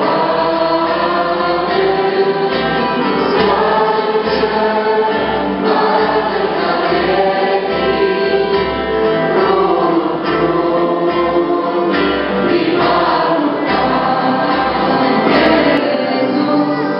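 Group of voices singing a Christian worship song, with no break.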